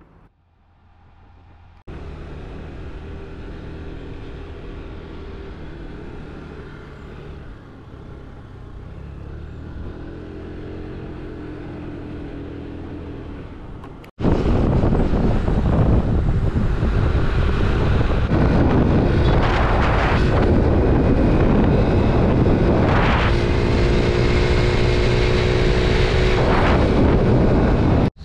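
A small engine running steadily while a tuk-tuk drives along. About halfway through, the sound cuts abruptly to a much louder ride on a motor scooter, with wind rushing over the microphone over the engine.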